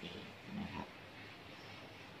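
A man's voice softly trailing off at the end of a sentence in the first second, then faint steady room hiss.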